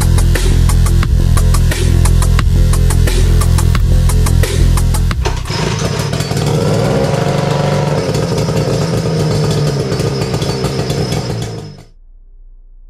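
Electronic music with a heavy beat for about five seconds, then a 1949 Kiekhaefer Mercury KE7H two-stroke racing outboard running on a test stand, fast and steady. It stops abruptly just before the end.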